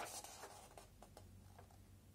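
Faint rustling and a few light ticks of a paper instruction booklet being held open and handled, fading to near silence.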